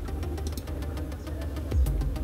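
A low, steady hum with a few faint clicks over it.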